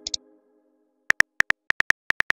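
Keyboard-tap click sound effects of a texting app, a quick run of taps starting about a second in as a message is typed. Just before them, two short high clicks and the last of a fading tone.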